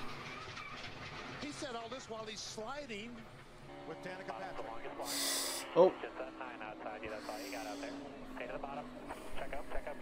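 NASCAR stock car's V8 engine heard through the in-car camera audio, a steady note that slowly falls in pitch, starting about four seconds in, under faint broadcast voices and two short bursts of hiss.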